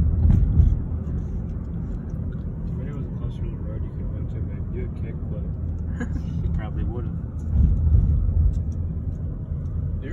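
Low, steady rumble of a car driving, heard from inside the cabin, swelling louder about half a second in and again near eight seconds. Faint, indistinct voices sit under it.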